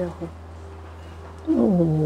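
A woman's voice in a long, drawn-out sound that falls steadily in pitch, starting about one and a half seconds in after a short pause; a steady low hum runs underneath.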